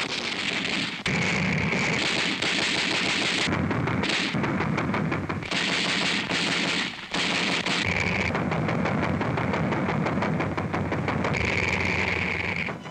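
Rapid automatic fire from a warship's twin-barrelled close-range anti-aircraft guns, in long continuous bursts broken briefly about a second in and again about seven seconds in.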